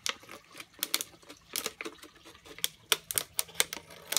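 Scissors cutting around the bottom of a thin plastic water bottle: a run of irregular sharp snips and crackles of the plastic, several a second.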